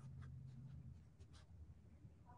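Near silence, with a few faint light ticks and rustles of hands handling a quilted fabric pot holder and felt leaves.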